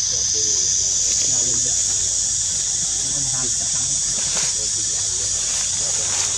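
Steady, high-pitched drone of an insect chorus in the trees, with faint voices underneath.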